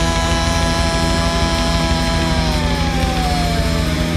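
Punk rock music: a long held chord over a steady low drone, sliding slowly down in pitch during the last second and a half.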